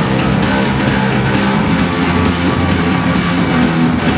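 Loud live rock band playing a song: electric guitars and bass guitar over a drum kit with cymbal hits.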